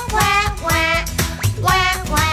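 Children's nursery-rhyme music with a steady beat, and a child's voice singing short, wavering crying syllables, about two a second, in time with it.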